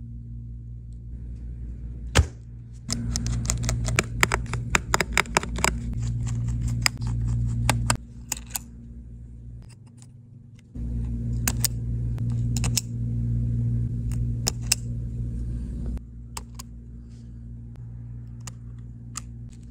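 Small sharp clicks and taps of metal tweezers and a spudger working an opened iPhone's internal brackets and flex-cable connectors, over a steady low hum. There is one loud click about two seconds in, then two dense runs of clicking, one around the middle and one near the end.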